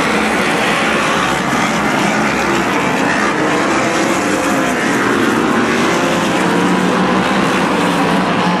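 Modified race cars running laps on a short oval track, their engines at racing speed making a steady, dense drone.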